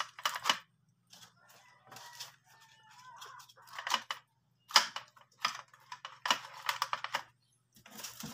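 Small tools and supplies being rummaged through and handled in a plastic box: a run of short, irregular clattering and rustling bursts, with a brief scraping stretch in the first few seconds.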